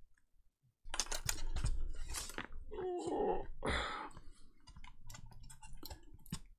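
Hands working a laptop motherboard loose from its plastic chassis: irregular clicks, taps and scraping of plastic and circuit board, with two short pitched strained sounds about three and four seconds in.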